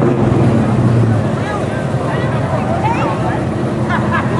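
An SUV's engine running steadily as it rolls slowly past at parade pace, with spectators' voices chattering around it.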